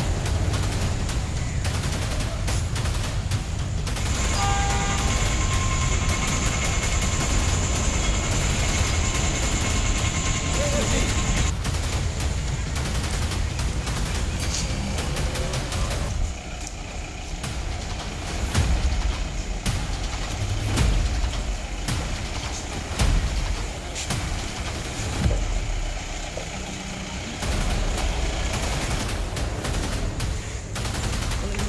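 Noisy street ambience, likely passing traffic and background voices, with frequent short knocks and crackles. A steady high tone holds for several seconds, from about four seconds in, and the sound changes abruptly about halfway through.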